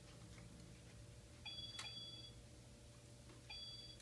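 Children's toy laptop giving two short high electronic beeps, each a pair of steady tones, the first about a second and a half in with a click in the middle of it, the second near the end.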